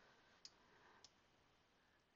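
Near silence broken by two faint computer-mouse clicks, about half a second in and again at about a second.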